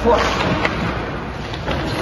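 Skate and knee pad scraping on the ice with a thud as the coach plants onto one knee, a sharp click following shortly after.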